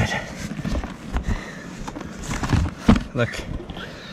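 Handling noise of a hard-shell laptop sleeve being gripped and lifted out of a plastic hard case: a string of irregular knocks and rubbing as it shifts against the case.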